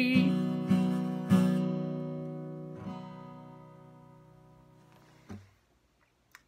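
Acoustic guitar playing the closing chords of a slow song: a few strums in the first second and a half, one more near three seconds, then the last chord rings out and fades away. A brief soft thump comes near the end.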